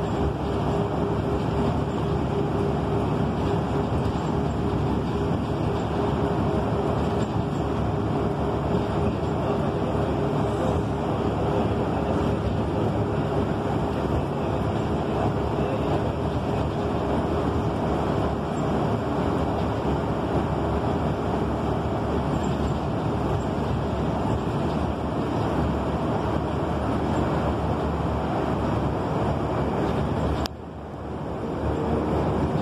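Inside a city transit bus on the move: steady engine and road rumble. A steady hum runs under it and fades out about halfway through.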